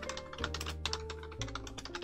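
Computer keyboard being typed on, a quick run of keystroke clicks as a file name is entered, over soft background music with steady held notes.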